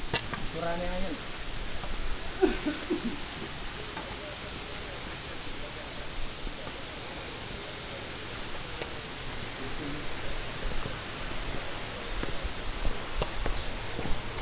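Steady rush of running water, an even hiss that holds throughout, with a few short snatches of voice in the first three seconds.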